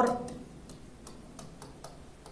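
Chalk tapping and clicking against a blackboard as a name is written: a string of short, irregular ticks, several a second.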